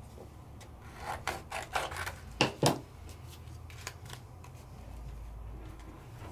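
Scissors cutting white cardstock, with paper rustling: a run of short cuts starting about a second in, the loudest two snips close together near the middle.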